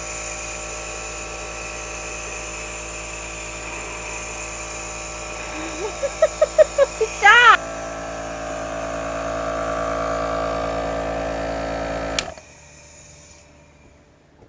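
Electric nebulizer compressor running with a steady motor hum while albuterol is inhaled through it, broken by a few short voice sounds about six to seven seconds in. About twelve seconds in there is a click and the compressor cuts off suddenly.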